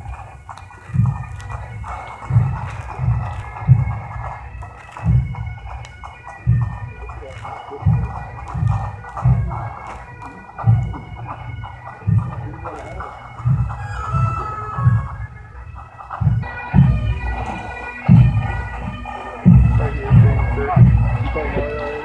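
Bagpipes playing a slow tune over their steady drones, with a regular low drum beat a little more than once a second underneath.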